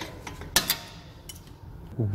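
Two sharp clicks about half a second in, then a fainter tick: a brake pad wear sensor being pushed into its slot at the brake caliper by hand.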